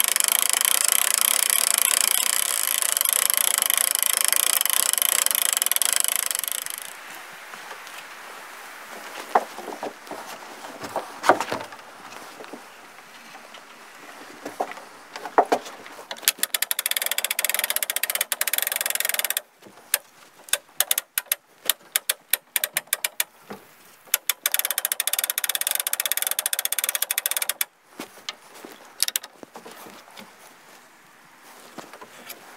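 A motor-driven winch on an A-frame gin pole runs in three stretches, stopping suddenly each time, as it hoists a strapped log up onto the wall. Sharp knocks and clatters of the log and rigging come in the pauses between runs.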